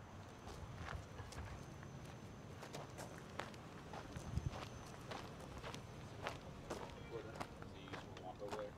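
Footsteps on pavement, short sharp steps about two a second, faint and irregular.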